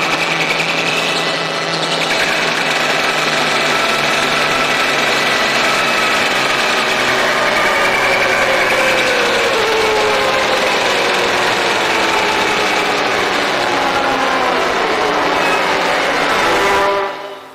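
A loud, continuous buzzing drone from a film soundtrack, thick with several tones that slide slowly up and down through it, one falling clearly near the middle.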